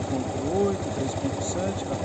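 Motorcycle engine idling steadily, with a fast, even run of firing pulses.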